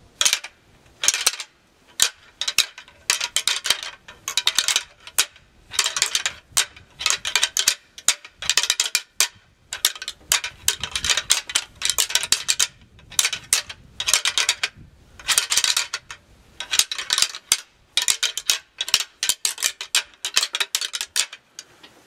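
A pair of deer antlers rattled together by hand: irregular bursts of rapid clacking and grinding of tines, mimicking two bucks sparring and clashing heads.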